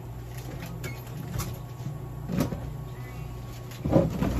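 A steady low hum with a few soft rustles and taps as birdseed is handled in cupped hands over a steel bowl. The loudest tap comes near the end.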